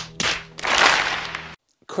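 A few sharp slaps of hands against foreheads, close together, followed by about a second of loud rushing noise that cuts off suddenly.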